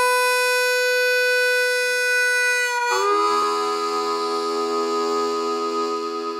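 Solo blues played on a free-reed instrument: one long held note, then about three seconds in a chord of several notes held together, starting to fade near the end.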